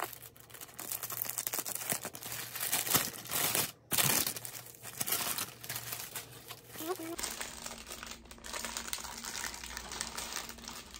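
White deli wrapping paper crinkling and rustling as a sandwich is unwrapped by hand, the noise breaking off briefly about four seconds in.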